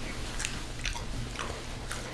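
Close-miked chewing and biting of food, with a few short crisp crunches.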